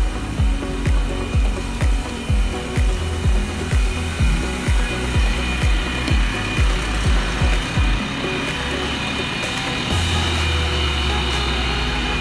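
A coach's diesel engine runs as the bus pulls away. Low pulses come about twice a second for the first eight seconds, then give way to a steady low rumble that grows louder near the end.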